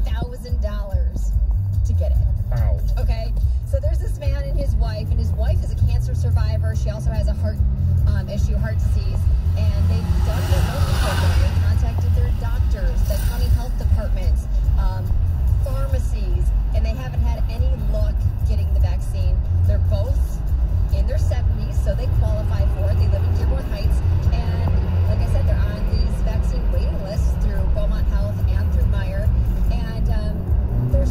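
Road noise inside a moving car's cabin: a steady low rumble of engine and tyres, with a car radio faintly playing talk and music underneath. A brief hiss rises and fades about ten seconds in.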